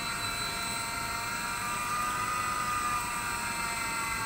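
Desktop single-screw plastic extruder running steadily. Its VFD-controlled drive motor and gearbox give an even hum with several thin, high whining tones over it.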